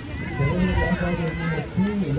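Speech: a person talking close by, over steady outdoor background noise.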